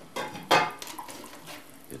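Dishes and cutlery clattering: two sharp knocks in the first half second, the second the loudest, followed by lighter clinks.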